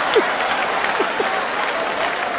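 Large theatre audience applauding after a comedian's punchline, a dense, steady clatter of clapping, with a few brief voices calling out over it.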